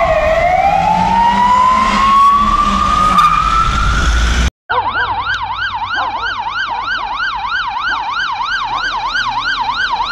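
Emergency-vehicle siren in a slow wail, falling near the start and then climbing steadily. After a sudden cut, a different siren sounds in a fast yelp, rising and falling about three times a second.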